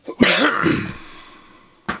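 A man coughing hard into his fist: one loud cough about a quarter second in that tails off over the next second, followed by a brief click near the end.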